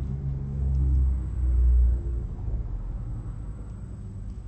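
A low rumble that swells loudest in the first half, with faint held tones beneath it.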